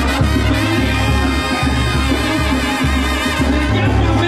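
Mexican brass-band music with trumpets and trombones over a bouncing bass line, playing steadily.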